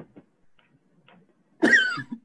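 A person coughing once, loudly and suddenly, near the end, after a few faint clicks.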